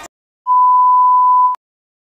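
A single steady electronic beep, one pure tone about a second long, starting about half a second in. It sits in dead silence between two stretches of music.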